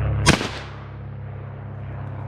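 A single gunshot from a long gun: one sharp report about a quarter-second in, dying away within half a second. A steady low drone runs underneath.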